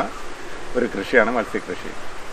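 A man's voice, speaking briefly, with a pause before and after.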